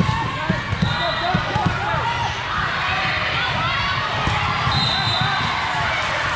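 Volleyballs being hit and bouncing in a busy sports hall, many dull thuds throughout, under overlapping voices of players and onlookers. Two short high-pitched tones sound, about a second in and near the end.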